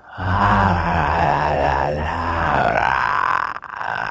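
A man groaning in one long, low, drawn-out voice that breaks off briefly near the end, heard over a video call.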